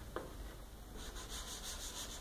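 A hand wiping chalk off a chalkboard, heard as a quick run of short, faint rubbing strokes in the second half.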